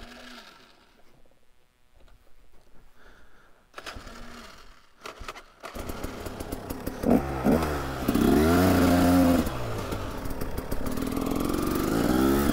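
KTM EXC 300's single-cylinder two-stroke engine: near quiet at first, then running loudly from about halfway in, revved up and down a couple of times before settling to a steadier run.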